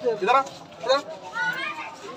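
Several people talking over each other at close range, children's voices among them.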